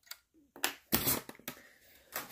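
A few light clicks and knocks from a 1:18 scale model car being handled and set on a hard tabletop, spread irregularly over two seconds.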